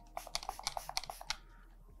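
A quick run of about a dozen faint, short clicks and spritzes in the first second and a half as stencil remover is pumped from a plastic spray bottle onto the skin.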